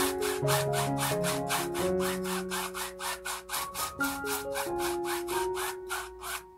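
A paintbrush rubbing acrylic paint back and forth on a stretched canvas in quick, even strokes, about four a second, with soft background music underneath.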